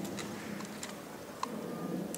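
A plastic spoon pushing and tapping moist melon seeds spread on paper: scattered light ticks over a faint rustle.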